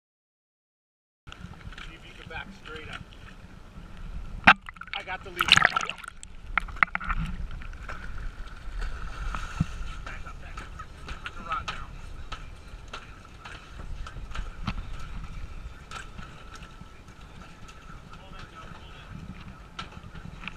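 Hooked sailfish splashing in the water alongside a boat as it is grabbed by the bill and lifted over the gunwale, with a sharp knock and then a loud splash about five seconds in. Under it a boat engine runs steadily in neutral, with wind on the microphone.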